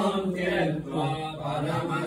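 Voices chanting a devotional Hindu chant, held melodic notes flowing on without break.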